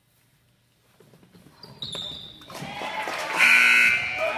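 Basketball game sounds in an echoing gym: after a quiet moment, sneakers squeak on the hardwood court and the play grows busier from about a second in. The loudest, high-pitched squeaking comes near the end as players scramble for the rebound.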